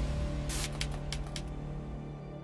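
Dark background music built on a steady low drone, with four or five short sharp clicks in its first half as text types out on screen.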